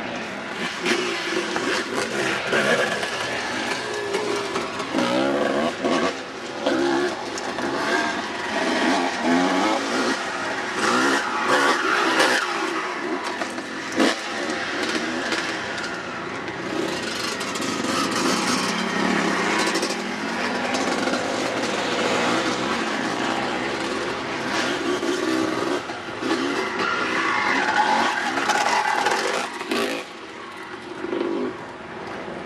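Dirt bike engine revving up and down as it is ridden along a trail, heard from on the bike, with a steady rush of wind.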